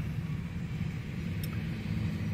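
Steady low rumble with a faint low hum underneath, even in level throughout.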